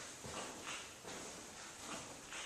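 Quiet room tone with a few faint soft knocks, about two a second.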